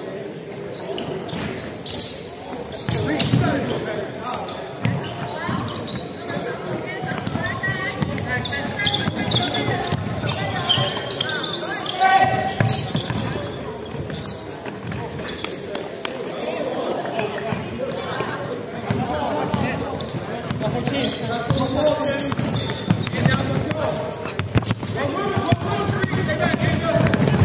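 Basketball game on a hardwood gym floor: the ball bouncing and players' voices calling out, echoing in a large hall.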